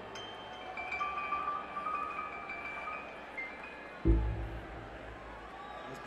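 Live keyboard interlude: high, bell-like keyboard notes held over a hazy background, then a loud low note struck about four seconds in that rings and fades.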